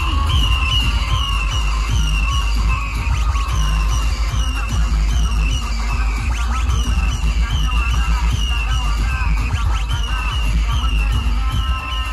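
Electronic dance music played loud through a DJ sound system's speaker stacks. Deep bass and a short high synth figure repeat about twice a second.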